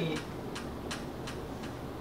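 Felt-tip marker drawing short strokes on a whiteboard: several quick, light ticks and squeaks spaced through the pause.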